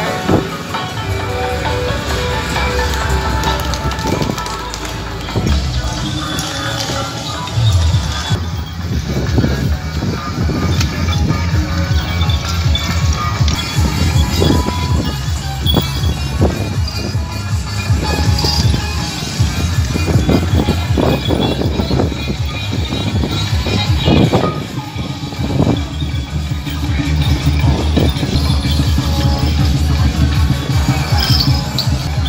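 Temple procession music: drums, gongs and cymbals beaten in a continuous dense clatter. For the first several seconds held melody tones sound over the percussion.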